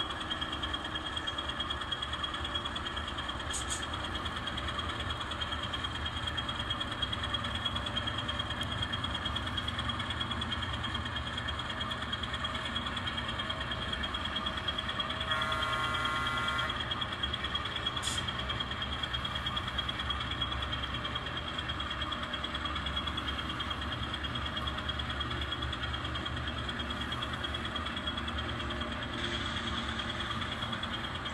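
N scale switcher locomotive with a diesel engine sound, running steadily while it pulls cars, over a constant high whine. A short horn sound comes about halfway through.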